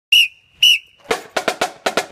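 Two short, shrill whistle blasts, the signal to a marching band, followed about a second in by the band's drumline starting a cadence with sharp, regular snare-drum strikes, about four a second.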